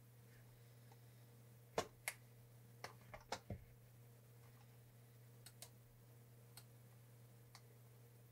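Sharp clicks from computer input at a desk, a quick run of about six between two and four seconds in and a few single clicks after, over a low steady hum.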